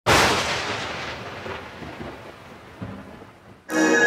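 A thunderclap: a sudden loud crack that dies away into a fading rumble over about three seconds. Near the end, music with held organ-like chords starts abruptly.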